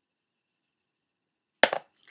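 Near silence, then a single short, sharp knock near the end.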